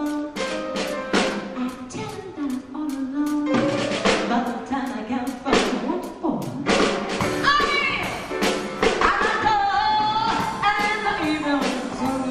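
Live band music with a woman singing lead into a microphone, her voice wavering with vibrato on held notes, over a drum kit keeping a steady beat.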